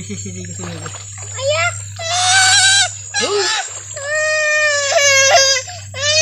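A young girl's high-pitched cries, several long drawn-out calls with shorter ones between, as she wades into the river water. A steady low hum runs underneath.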